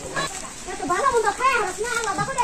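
Several voices, children among them, calling out in a repeated ritual chant.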